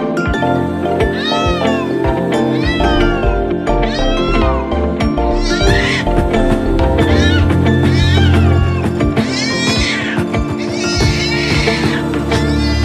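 Music with repeated meows over it: arched calls that rise and fall, about eight of them, one roughly every second and a half, getting louder after the middle.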